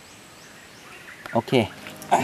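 Quiet forest ambience: a faint steady hiss for the first second or so, then a man says 'okay' briefly.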